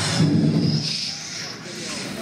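Concert audience cheering and shouting, loudest in the first second and then fading, with a high shrill sound held for about a second over it.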